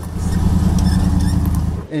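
Ambulance van engine running as it drives close past, a steady low hum that swells in the first half-second and then cuts off abruptly near the end.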